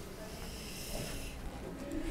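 Quiet meeting-room background between speakers, with a soft hiss through the first second or so.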